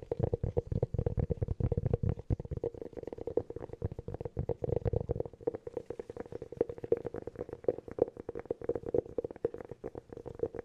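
Fingertips tapping rapidly on a hollow cork object held close to the microphones: a dense patter of soft taps, each ringing at the same low, hollow pitch. The taps are fuller and deeper in the first two seconds and again around the fifth second.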